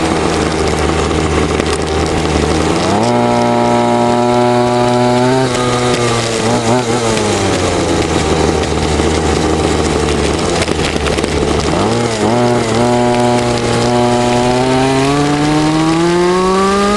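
Small engine of a Super Goquad 46 radio-controlled quad running under way, its pitch stepping up about three seconds in, dipping twice as the throttle is let off, and climbing again near the end.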